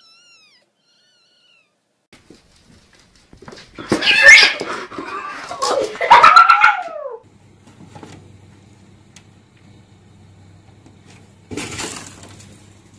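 A cat caterwauling loudly for about three seconds, harsh and raspy, ending in a long drawn-out yowl that falls in pitch.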